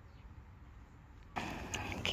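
Faint low background hum, then about a second and a half in a sudden step up to louder outdoor ambient noise with a few short clicks.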